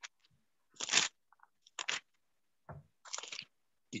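A few short, dry rustling crunches about a second apart, with silence between them: handling noise near the microphone while the verse is being looked up.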